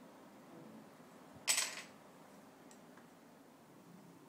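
A single short, sharp clink of a small hard object being knocked or set down, about one and a half seconds in, over faint room hiss.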